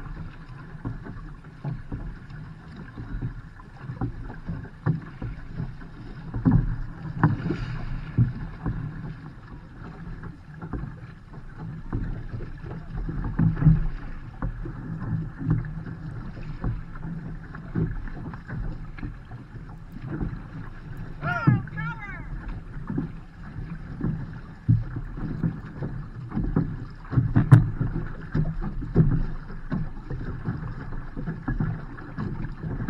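Outrigger canoe paddling: paddle blades catching and pulling through the water in repeated strokes, with water washing along the hull. A brief shouted call comes about two-thirds of the way through.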